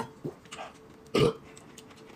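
A short burp about a second in, with faint clinks of a spoon and tableware around it.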